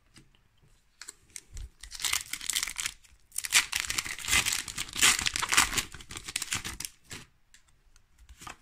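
A Pokémon TCG booster pack's foil wrapper being torn open and crinkled by hand. The crackling starts about a second in, is loudest and densest in the second half, and stops shortly before the end.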